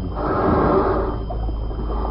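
Radio-drama sound effect of an elephant snorting: a noisy, rasping snort lasting about a second and a half.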